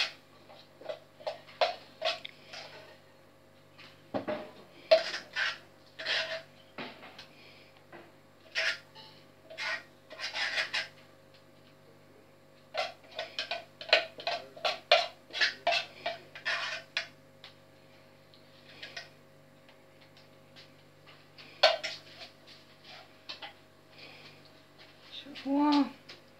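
A metal utensil scraping and clinking against a metal bowl in irregular runs of short strokes with pauses between, as cream is scooped out and spread onto a cake layer.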